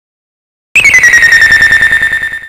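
Electronic alarm tone, a single high beep pulsing about ten times a second, starting just under a second in with a brief downward slide in pitch before holding steady.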